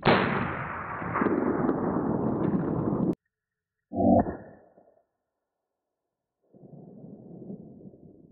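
Slowed-down sound of a .357 Magnum revolver shot striking a soft armor panel, heard as a long, low, drawn-out blast that cuts off abruptly after about three seconds. About a second later comes a shorter, pitched burst, followed after a gap by faint outdoor background noise.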